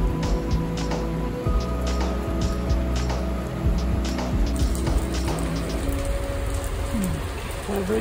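Background music with long held notes laid over rain falling on a shelter and wet pavement, with many single raindrops ticking sharply close to the microphone.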